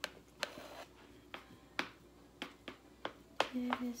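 A white spatula tapping and scraping against an aluminium sheet pan as a layer of rice and topping is spread and pressed flat: about nine sharp clicks at uneven intervals. A short hummed word comes near the end.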